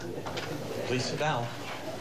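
A murmur of several voices talking at once, high children's voices among them.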